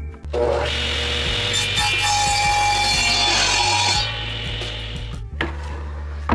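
Radial arm saw cutting through a cedar board. The loud cutting noise starts just after the opening and stops about four seconds in.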